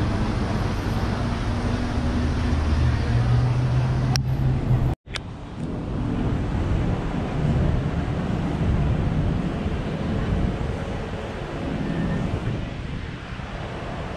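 Street traffic with wind on the microphone: passing cars and a low engine hum. About five seconds in, the sound drops out for an instant at an edit cut, then the traffic noise resumes a little quieter.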